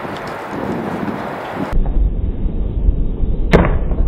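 Outdoor wind noise on the microphone, then, about two seconds in, slowed-down slow-motion audio with a deep rumble and one sharp thud near the end: feet landing a precision jump on a sandstone block.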